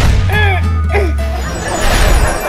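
Edited-in cartoon sound effects over background music: a crash-like hit with a deep rumble, a few sliding tones, then a second noisy surge near the end.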